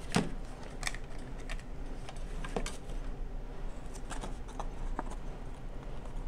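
Scattered light clicks and taps of foil card stock being folded and pressed together by hand, with a sharper knock just after the start.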